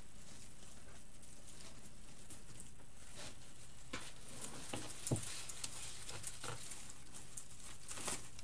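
Artificial pine stems and a ribbon bow rustling and crinkling as they are handled and pushed into place, starting about three seconds in, with a few light knocks, the loudest about five seconds in.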